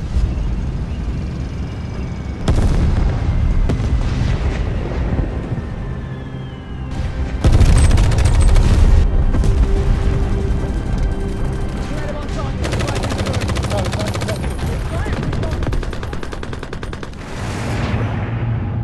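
Film battle sound mix: explosions and rapid machine-gun fire over a music score. The loudest stretch, a heavy blast followed by fast gunfire, comes about halfway through, and rapid fire runs on for several seconds near the end.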